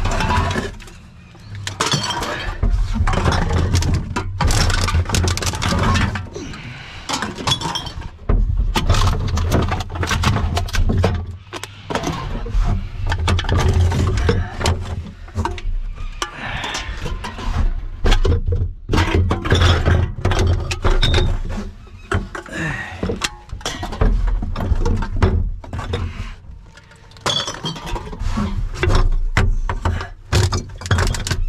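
Empty aluminium beer cans and plastic bottles clattering, clinking and crinkling as they are scooped up and handled by gloved hands, in a continuous irregular jumble of sharp knocks, over a low steady rumble.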